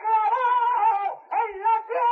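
A male flamenco cantaor singing a saeta unaccompanied: a high, wavering melismatic vocal line, broken by short pauses about a second in and near the end.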